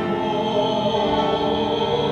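Choir singing sustained, held notes.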